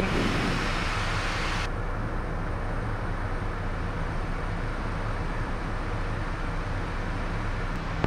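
Steady in-flight cockpit drone of a Piaggio P180 Avanti's twin pusher turboprops on descent: a low engine and propeller hum under a rush of airflow. The hiss turns duller about two seconds in.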